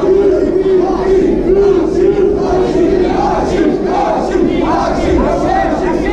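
Crowd of spectators shouting and yelling, many voices overlapping without a break.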